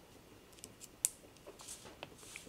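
A few faint, light taps and clicks of a fingertip and stylus on an iPad's glass screen, the sharpest about a second in, with some soft scuffing near the end.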